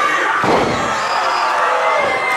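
A wrestler's body hitting the wrestling ring's canvas about half a second in: one heavy slam from the ring, ringing briefly, over crowd voices.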